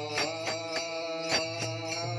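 Warkari bhajan: a group of men singing a long held line together, with small brass hand cymbals (tal) struck in a steady beat.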